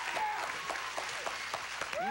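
Game-show studio audience applauding, a dense steady patter of clapping with a few voices calling out over it.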